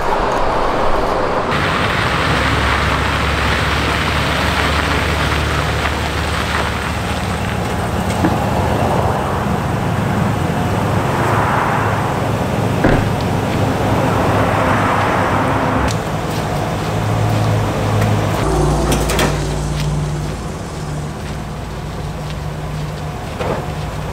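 Chevy dump truck engine idling steadily, a low even hum whose note shifts deeper about three-quarters of the way through.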